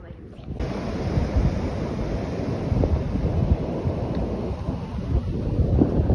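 Ocean surf on a beach with wind buffeting the microphone: a loud, rough rush heavy in the low end that cuts in abruptly about half a second in.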